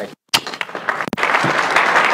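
An audience applauding, the clapping thickening and growing louder about a second in.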